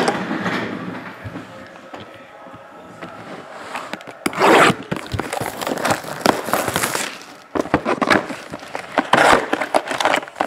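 Plastic shrink wrap being torn and crumpled off a sealed trading-card hobby box, with a knock as the box is handled at the start. The crinkling runs on and off, with a loud tear about four and a half seconds in.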